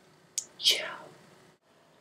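A faint click, then a short breathy whisper from a person, falling in pitch.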